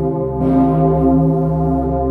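The Pummerin, a cast bell of about 20 tonnes tuned to C0, swinging and ringing: the clapper strikes about half a second in and again right at the end, over a low steady hum that carries on between strikes.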